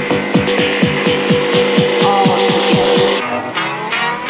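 Electronic dance music mixed live by a DJ: a fast run of kick drums under a steady high tone. About three seconds in, the kicks and the top end drop out, leaving a rising sweep as a build-up.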